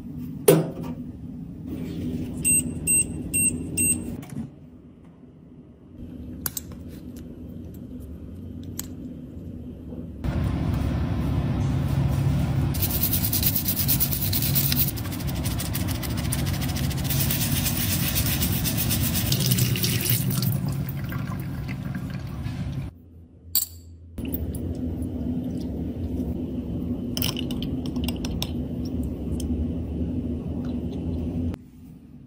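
Tap water running and splashing in a sink while a plastic makeup compact is scrubbed with a brush under it, a loud rushing that lasts about thirteen seconds from about ten seconds in. Before it come a few short glassy clinks and knocks as a glass beaker is handled in a metal dishwasher rack.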